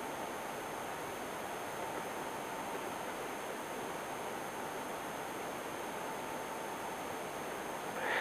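Steady hiss of background noise with a faint steady tone in it, and no clicks or other events.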